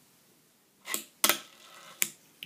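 Handling noise on the recording camera: a brief rustle about a second in, then a sharp click, with quieter shuffling after it.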